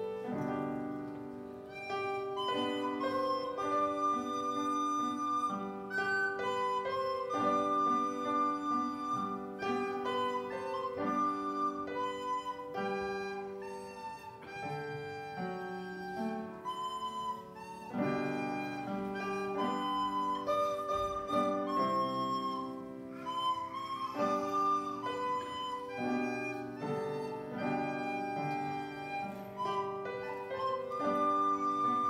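A recorder playing a solo melody of held notes, accompanied by an upright piano.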